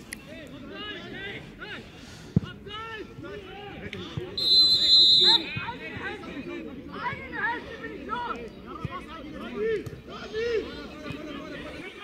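Referee's whistle blown once, about a second long, some four and a half seconds in: a high, slightly warbling blast, the loudest sound. Around it, shouts and chatter of players and spectators at a football match, with a single sharp knock a little before it.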